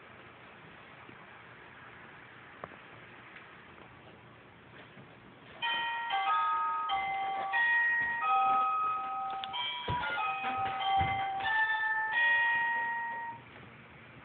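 A bell-like tune of clear, steady notes, several at once, starts about five and a half seconds in and plays for about eight seconds, with a couple of dull thumps under it near the end.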